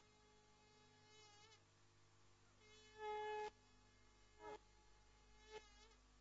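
Faint music from a buzzing, reedy wind instrument: a few short held notes, the longest about three seconds in, with warbling ornaments about a second in and again near the end.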